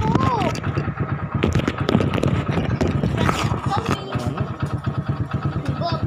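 Small motorcycle engine running steadily.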